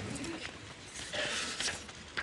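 A paper envelope rustling softly as it is opened, with a faint low murmur of a voice near the start.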